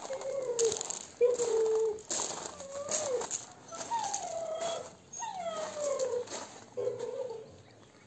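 Georgian shepherd dog whining, about six short whines, several sliding down in pitch, while it digs into a heap of loose soil, with scratching and scattering of earth between the whines.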